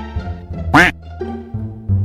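Background music with a steady bass line. About three-quarters of a second in, a short cartoon sound effect sounds: a quack-like squawk that rises and falls in pitch.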